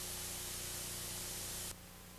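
Steady hiss of an old VHS tape's audio track, with a faint low steady hum beneath it; the hiss drops abruptly near the end.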